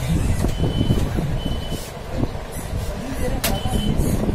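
Three short, high electronic beeps, each about half a second long and unevenly spaced, over a steady low rumble, with a sharp click just before the last beep.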